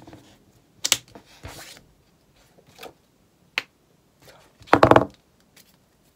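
Knuckles cracking: a quick run of several loud pops about five seconds in, after a few fainter clicks.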